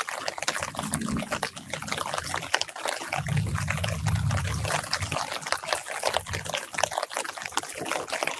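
Light rain pattering on the leaves of an orange tree and the yard, a dense, even spatter of drops. A low rumble rises about three seconds in and dies away after about two seconds.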